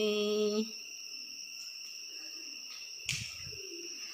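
A Red Dao (Iu Mien) folk singer's held note ends about half a second in. A pause between sung lines follows, with only a faint steady high hum and a short soft low bump about three seconds in.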